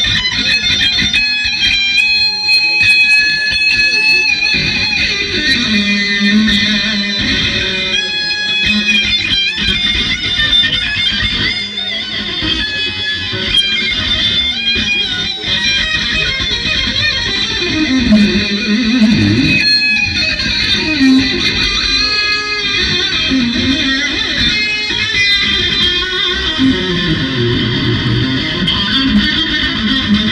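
Electric guitar played through an amplifier: a lead line with long held high notes, continuing throughout.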